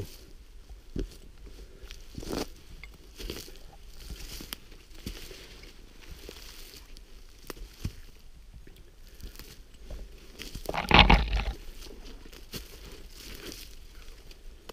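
Footsteps crunching through a thin layer of snow over dry leaf litter, with irregular steps and crackles. A louder rustling scrape comes about eleven seconds in.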